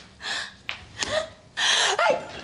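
A woman gasping in short breaths that build up to a loud sneeze near the end.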